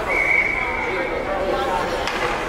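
A referee's whistle, one long, steady, high blow of about a second and a half, over the murmur of voices in an ice rink.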